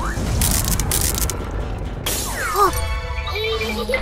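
Cartoon glass-cracking sound effect about two seconds in, over background music, as a bubble cracks. Short squeaky, wavering sounds follow it.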